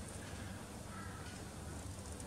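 Faint steady background noise of the workshop room, with no distinct event.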